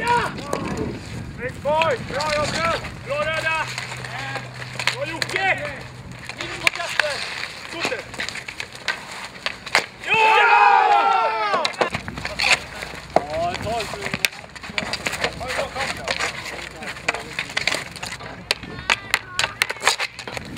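Street hockey on asphalt: sticks clacking and scraping and the ball being struck, in many sharp clicks that come thicker near the end. Players shout over it, with one long loud shout about ten seconds in.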